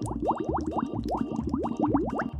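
Cartoon underwater bubbling sound effect: a quick even run of short rising bloops, about seven a second.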